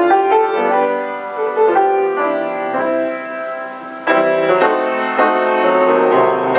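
Rösler six-foot grand piano being played: a flowing melody over chords that softens through the middle, then comes back strongly with a loud chord about four seconds in.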